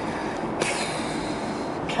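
Road and tyre noise inside a moving car's cabin, a steady rush with extra hiss that comes in about half a second in and drops away near the end.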